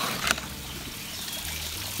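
Steady trickle of water, as from a garden fish pond, with a single light click about a third of a second in.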